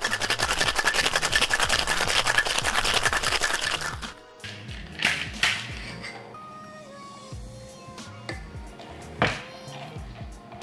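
Ice being shaken hard in a Boston shaker, a fast, dense rattle against the metal tin for about four seconds, picked up by a camera's built-in microphone. After it, quieter background music with a few sharp knocks.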